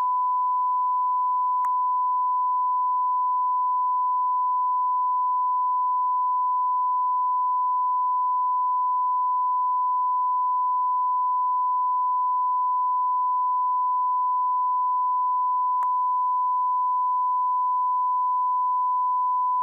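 Steady 1 kHz reference tone on a broadcast network feed, held at one pitch and one level, sent with a feed slate while the line waits for programme. Two faint clicks break it, one near the start and one near the end.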